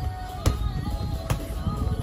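Two sharp smacks of strikes landing on Thai pads, a little under a second apart, over background music.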